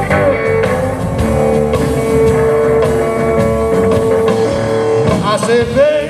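Live electric blues band playing: a hollow-body electric guitar holds one long sustained note over bass and drums, then wavering, bending notes come in near the end.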